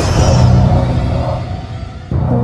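A sudden, loud, deep booming hit from a trailer's sound design, with a low rumbling tail that fades over about two seconds and cuts off at the end.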